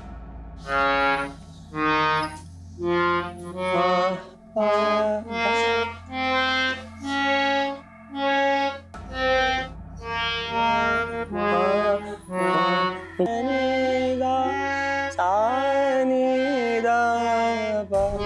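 Harmonium played one note at a time, a beginner's practice of the natural (shuddh) notes of the scale, over a steady low drone. In the last few seconds the notes run together and a sliding melody line joins them.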